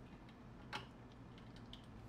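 Near silence: faint room tone, with one small click about a second in and a few fainter ticks.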